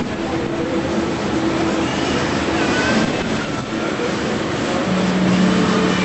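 Tour boat under way: a steady rumble of its engine and the rush of water passing the hull, with faint short tones drifting in and out.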